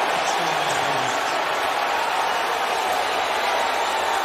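Stadium crowd noise: a steady roar of many voices from a packed football stadium after a touchdown, with no single sound standing out.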